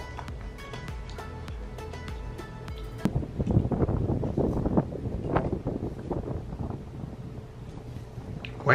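Soft background music with sustained tones, cut off abruptly about three seconds in. It gives way to uneven, gusty wind buffeting a microphone outdoors.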